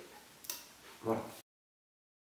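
A single short click about half a second in, over faint room tone, then the sound cuts off abruptly to dead silence.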